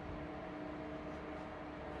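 Steady background room noise, a faint even hiss with a low hum running under it.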